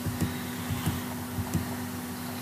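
Steady background hiss with a constant low hum and a few faint ticks.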